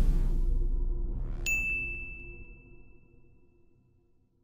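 Logo sting sound effect: the low rumble of a hit dies away while a short rising sweep leads into a single bright, high ding about a second and a half in, which rings on and fades out.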